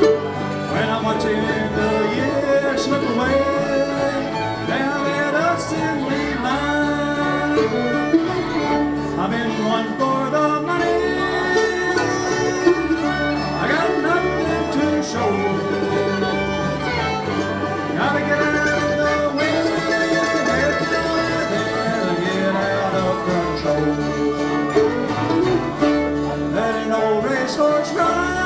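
Live bluegrass band playing an instrumental break between verses, with a bowed fiddle over acoustic guitar and upright bass.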